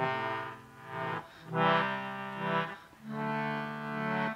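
George Case baritone English concertina playing the opening chords of a folk-song accompaniment: three long sustained chords with short breaks between them, starting suddenly from quiet.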